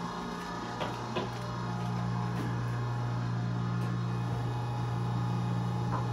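Steady low electrical hum of commercial kitchen equipment running, with two light knocks about a second in.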